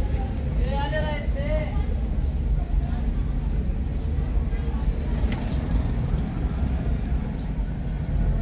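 Busy street ambience: a steady low rumble of motor traffic, with a passer-by's voice calling out briefly about a second in.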